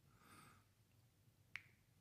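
Near silence: a faint breath in, then a single short mouth click about one and a half seconds in.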